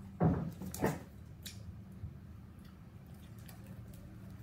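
An English bulldog makes two short, loud noises, the first about a quarter of a second in and the second just under a second in, while it begs for and takes a treat. These are followed by faint licking and mouth clicks.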